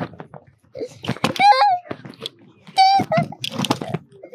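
A young girl squealing in two long, high-pitched cries, excited and half protesting, half laughing.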